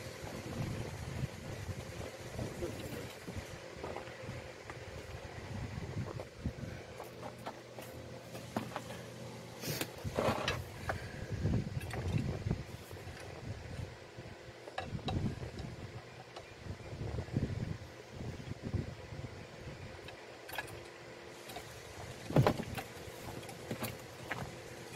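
Hand-pumped car jack being worked, its pump handle pivot held by a bolt and nut in place of the original clip: irregular metal knocks and clanks with low handling thumps, a couple of sharper clanks about ten seconds in and near the end.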